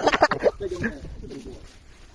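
A few words of loud speech at the start, then fainter low voices that die away to quiet outdoor background.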